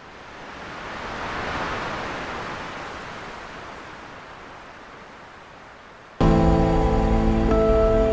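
A soft swell of steady noise, with no clear pitch, rises for about a second and a half and then slowly fades. About six seconds in, gentle background music with long held notes starts suddenly and louder.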